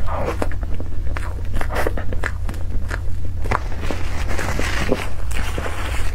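Close-miked chewing and mouth sounds of a person eating soft cream cake, with many small clicks and brief squishy bursts in quick, irregular succession, over a steady low hum.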